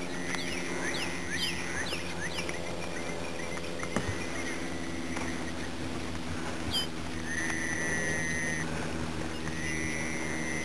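Bird calls in open country. A quick run of short, downward-sweeping whistles is heard over the first couple of seconds, and two longer, level whistles come near the end. A steady low hum sits underneath, and there is a single sharp click about four seconds in.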